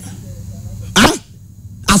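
A man's voice giving one short, loud bark-like shout about a second in, imitating a dog.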